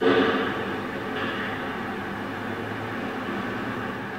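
Steady noisy ambience, a low rumble with hiss and no clear events, starting suddenly and holding level.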